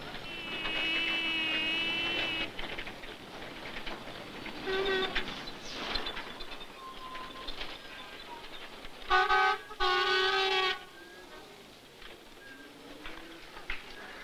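Steam locomotive whistle blowing in a rail yard: a long blast near the start, a short toot about five seconds in, then two loud blasts in quick succession near ten seconds, over a steady rumble of yard noise.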